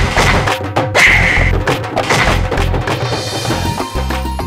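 Dramatic background score driven by fast percussion strikes over deep, booming drum beats; the rapid strikes thin out near the end.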